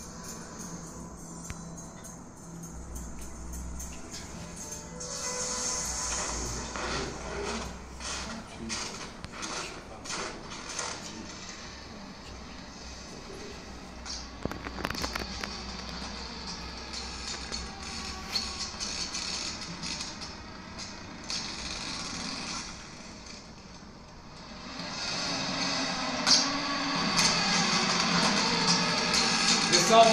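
Arctic sea ice shifting under pressure, played back through room speakers: a long run of sharp cracks and creaks that grows louder and denser near the end.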